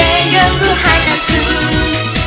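Upbeat Japanese pop song: a sung melody over bass and a steady beat.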